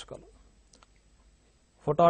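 A short pause in a man's lecturing speech, with one faint click about three-quarters of a second in; his speech resumes near the end.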